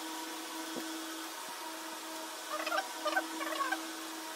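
A domestic fowl calling in the background: a quick run of short warbling calls starting about two and a half seconds in, over a steady low hum. There are a couple of faint knocks in the first half.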